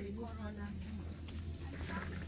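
Faint voices of people talking at a distance, over a steady low hum.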